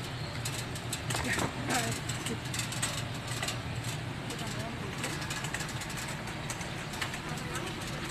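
Busy store ambience: a steady low hum with indistinct background voices and scattered light clicks and rustles.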